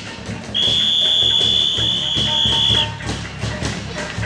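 A shrill whistle blown once and held steady for about two seconds over continuous procession drumming.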